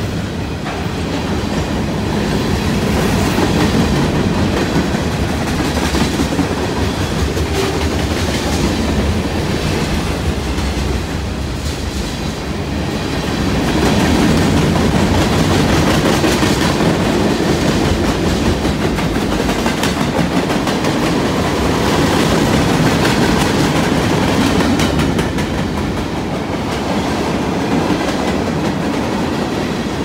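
Freight cars of a CN freight train rolling past at close range: a steady rumble of steel wheels on rail with a running clickety-clack, swelling and easing slightly as different cars go by.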